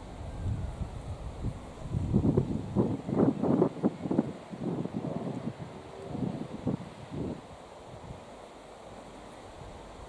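Wind buffeting an outdoor microphone: a low steady rumble, with a run of louder irregular gusts through the middle few seconds.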